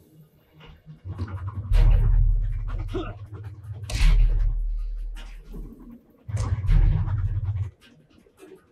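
Film soundtrack of a fight on the roof of a moving train: a deep rumble broken by heavy, sudden thuds, three loud surges in all. A short laugh comes in between.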